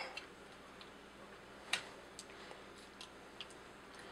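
A few faint clicks of plastic parts as a large plastic robot toy's wing feathers are handled and fitted, with one sharper click a little under halfway through.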